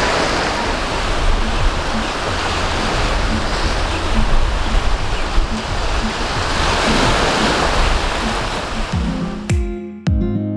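Sea surf: waves breaking and washing up onto the beach, with wind, steady and loud, and a faint musical beat under it. About half a second before the end, a plucked-guitar intro tune cuts in.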